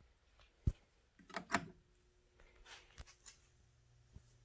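Faint handling noises as a CRT tester's adapter socket is fitted onto the base of a picture tube: a single sharp knock about two-thirds of a second in, then a few light rustles and clicks.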